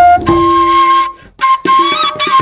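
Bansuri (bamboo transverse flute) playing long held notes, stopping briefly for a breath a little over a second in, then picking the melody up again with a small bend in pitch near the end.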